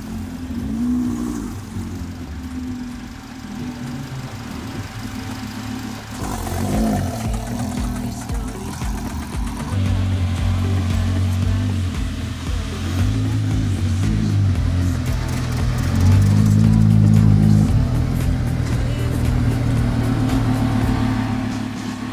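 Lamborghini Gallardo's engine running as the car drives slowly off a tow truck onto grass. Background music with a steady beat comes in about six seconds in and grows louder.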